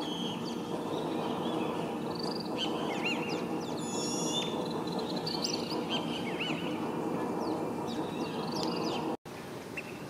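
Birds chirping and calling in short rising and falling notes, with a fast high trill about four seconds in, over a steady low hum.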